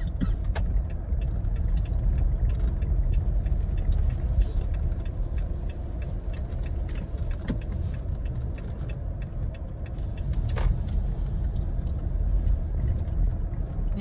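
Car driving slowly on a rough dirt road, heard from inside the cabin: a steady low rumble with many small ticks and knocks throughout.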